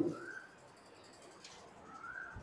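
A bird calling faintly, a short whistled note that rises then falls, repeated about two seconds apart. A faint click comes about one and a half seconds in.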